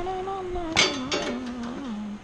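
A man hums a few drawn-out notes that step down in pitch. About a second in there is a sharp clatter as thin aluminium engine cooling baffles are handled in their cardboard box.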